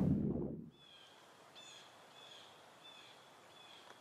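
A low whooshing rumble fades out within the first second. Then comes faint outdoor quiet, with a small bird repeating a short, high chirp about every two-thirds of a second.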